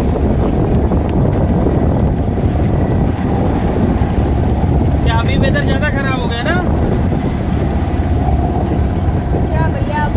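A motorboat's engine runs steadily with wind buffeting the microphone, a continuous low rumble. A person's voice cuts in briefly about five seconds in and again near the end.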